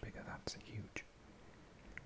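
Faint whispered mouth sounds and breath from a man whispering, with a couple of short clicks in the first second, then almost nothing.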